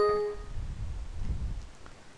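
Windows 7 system alert chime: one short tone that fades within about half a second as a dialog pops up, here the prompt that the computer is running slowly and should switch to the basic color scheme. A faint low rumble follows.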